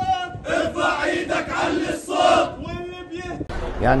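A crowd of men chanting together in short shouted phrases, with a brief pause before the chant gives way to a man speaking near the end.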